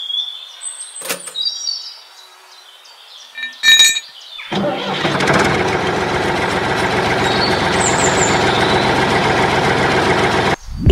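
A couple of small metallic clinks as a trolley's hitch is fastened to a miniature toy tractor. About four and a half seconds in, the toy tractor's motor starts and runs steadily and loudly as it tows the trolley.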